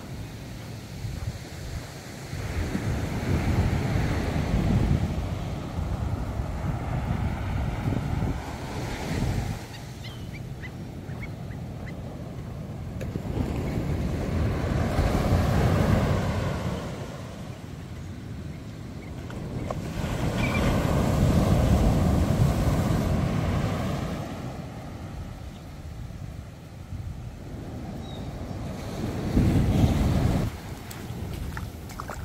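Ocean surf breaking on a sandy beach and washing up the shore. It rises and falls in long surges every six or seven seconds.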